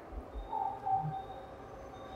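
A quiet pause in indoor conversation: room noise with a faint high tone held for under a second, starting about half a second in.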